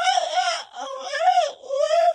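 A person's high, wavering wail that rises and falls several times, mimicking the screams of sheep.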